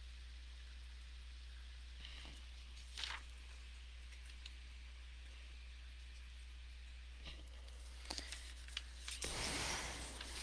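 Quiet room tone with a steady low hum, broken by a few faint rustles and clicks of handling, one about three seconds in and several near the end. A slightly longer rustle comes just before the end.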